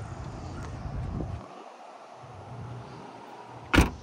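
The power trunk lid of a 2023 Tesla Model 3 closing after its button is pressed, ending in a single sharp thud near the end as the lid shuts and latches.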